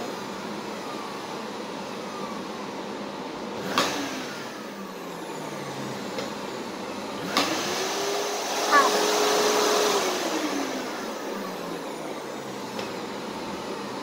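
Vacuum cleaner switched on with a click about seven seconds in: its motor whines up in pitch, runs steadily for a couple of seconds, then winds down, falling in pitch. A click about four seconds in is followed by a short falling hum.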